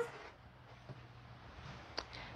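Faint sound of a rotary cutter rolling through folded fabric along the edge of a ruler onto a cutting mat, with a low steady hum underneath.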